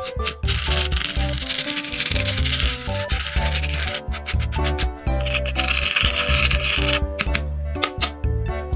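A plastic spoon rubbing and spreading coloured sand across a sand-painting board, making a gritty scraping in two long strokes: one from about half a second in to four seconds, the other from about five to seven seconds. Background music plays throughout.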